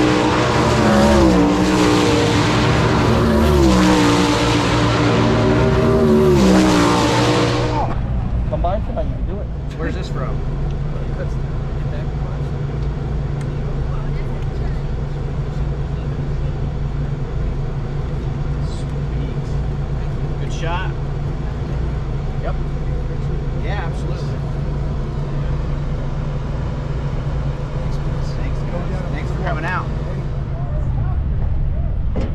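Race car engines on the dirt oval, their pitch repeatedly rising and falling as they accelerate down the straights and back off for the corners. After about eight seconds the sound cuts to a steady low hum, with faint voices here and there.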